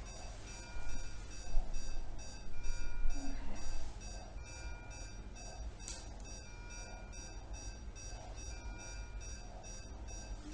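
Electronic medical equipment alarm beeping in a fast, evenly repeating pattern of several beeps a second. Louder rustling and bumping sounds come in the first four seconds.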